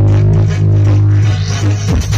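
Electronic dance music blasting from a large stacked outdoor sound system, the low bass held as one long note for over a second before the beat comes back near the end.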